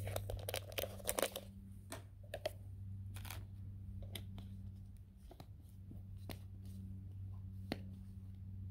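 Faint clicks and crinkles of a plastic water bottle being handled after an orange drink mix was shaken into it, scattered through the first few seconds with a couple more near the end, over a steady low hum.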